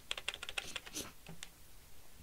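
Computer keyboard keys clicking quietly in a quick run of keystrokes through the first second, then a few scattered clicks.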